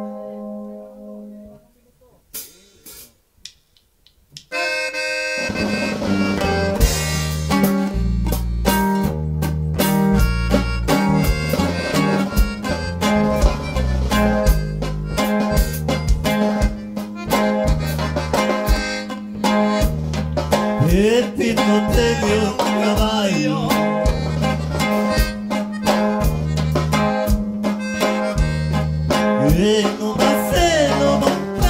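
Norteño band of button accordion, bajo sexto, electric bass and drum kit playing live. It opens with a short held accordion chord and a few plucked bajo sexto notes, then about four and a half seconds in the full band comes in with a steady bass-and-drum beat under the accordion.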